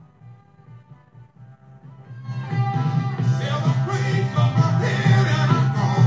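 Recorded music: a quiet stretch of faint music, then a song comes in loudly about two seconds in and plays on.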